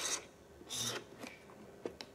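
A pen writing on a cardboard box: two short scratchy strokes and a few light ticks, heard played back through a hall's loudspeakers.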